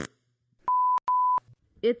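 Two short, steady electronic beeps at about 1 kHz, each roughly a third of a second long, one right after the other: a censor-style bleep tone.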